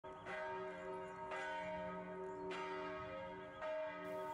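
Church bell tolling, four strikes a little over a second apart, each ringing on.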